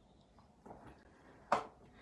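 Faint handling sounds of a gel paint bottle and its brush, with one short sharp knock about one and a half seconds in.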